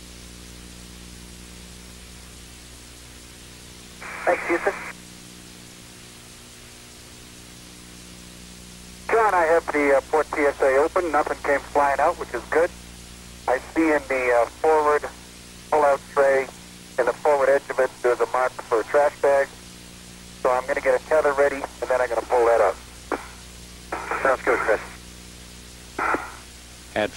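Radio voice transmissions that sound thin and narrow, over a steady hiss and a low electrical hum. A short transmission comes about four seconds in, and talk runs nearly continuously from about nine seconds on.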